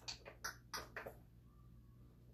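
Faint light clicks and taps of small plastic makeup items being rummaged through, about six in the first second.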